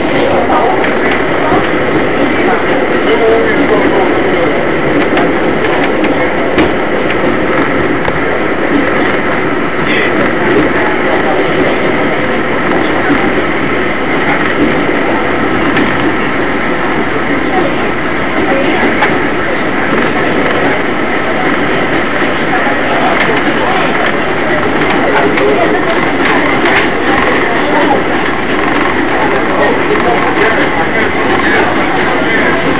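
R188 subway car running at steady speed, heard from inside the car: a loud, steady rumble of wheels on the track with a steady whine from the motors.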